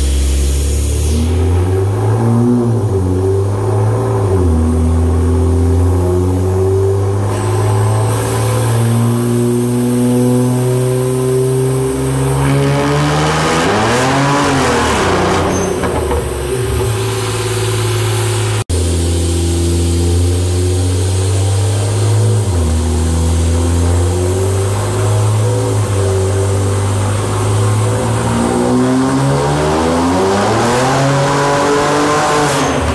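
BMW 335i's N54 twin-turbo straight-six running hard on a chassis dyno, its note climbing and dropping in steps. About fourteen seconds in the revs flare up sharply and fall back. This is the automatic transmission slipping under high boost.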